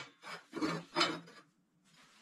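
Steel round tubes sliding and scraping against a steel welding table as they are moved into position, three short scrapes in the first second and a half.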